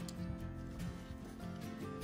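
Background music with held notes.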